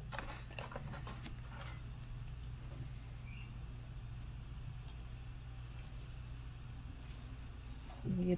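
Screws clicking and rattling as a gloved hand picks them out of a cardboard box, a few quick clicks in the first couple of seconds, over a steady low hum.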